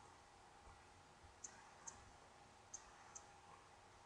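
Faint computer mouse button clicks, two pairs of them about half a second apart, over near-silent room tone.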